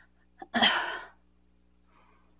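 A woman sneezing once, about half a second in: a single short, sharp burst of breath that dies away within half a second.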